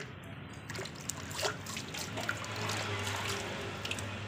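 A hand swishing and rubbing a plastic toy in a plastic bucket of water, washing the slime off it: water sloshing and trickling, with irregular small splashes.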